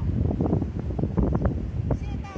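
Wind buffeting the microphone in a loud, uneven low rumble.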